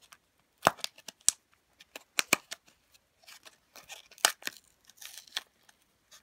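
A plastic toy capsule being unwrapped and opened: its paper label and plastic wrapping tearing and crinkling, with scattered sharp plastic snaps and crackles.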